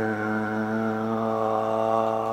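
A man's voice holding one long, steady low note without accompaniment, sung or hummed without a change in pitch.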